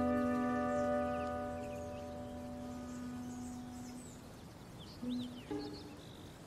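Background film score holding one sustained chord that fades away over about four seconds, with birds chirping faintly.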